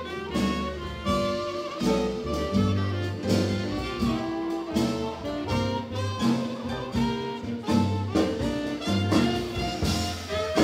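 Slow blues played by a jazz band, with held notes over a steady, slow beat.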